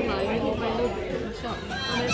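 People talking, with music playing underneath.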